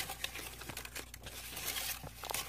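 Crackly rustling from the enclosure's artificial plant leaves and paper towel being handled and brushed against: a continuous run of small crinkles and clicks.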